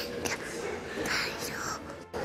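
A soft whispered voice, breathy and hushed.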